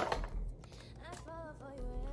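A sharp click right at the start as a small plastic gift package is opened, then faint background music with a singing voice.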